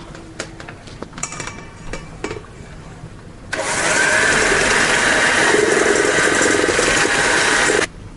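Electric hand mixer beating egg yolks and sugar until foamy in a stainless steel bowl under a clear plastic splash guard. A few light handling clicks come first. The motor starts about three and a half seconds in, runs steadily, and cuts off suddenly just before the end.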